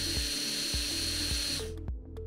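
De Soutter Medical MCI-270 pencil-grip surgical handpiece spinning a metal-cutting disc with no load: a steady high-pitched whine that stops near the end.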